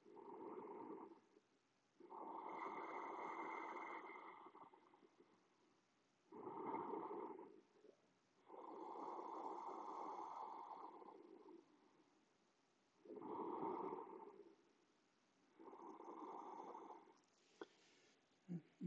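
Slow, deep ujjayi breathing: a person breathes audibly through a narrowed throat, about three full breaths. Each short in-breath is followed by a longer, steady out-breath.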